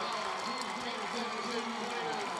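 Stadium crowd cheering as a steady, fairly faint wash of noise with indistinct voices in it.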